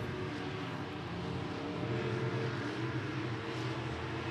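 IMCA Sport Modified dirt-track race cars running at speed around the oval, their engines a steady drone.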